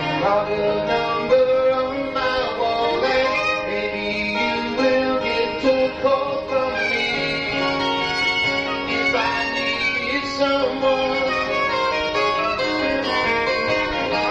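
Live bar band playing an instrumental passage: a saxophone carries a sustained, sliding lead line over guitar, bass and drums, heard through an old cassette recording.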